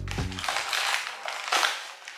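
A cardboard product box being opened and stick sachets slid out of it: dry rustling and scraping of paper and packaging, loudest about one and a half seconds in.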